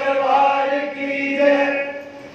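Devotional chanting, voices holding long steady notes, which stops just before the end.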